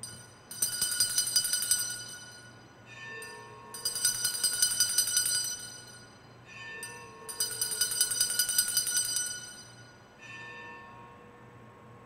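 Sanctus (altar) bells rung in three bursts of rapid strokes about three and a half seconds apart, each burst followed by a softer, lower ring. The ringing marks the consecration of the bread just after the words of institution.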